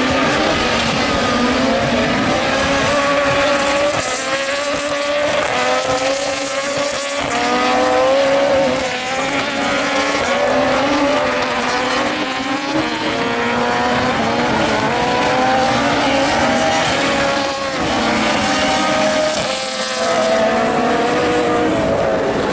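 Super 1600 rallycross cars racing, their naturally aspirated 1.6-litre four-cylinder engines revving high. The engine note climbs again and again, with short drops in pitch, and the sound briefly falls off twice, near 9 s and 17.5 s.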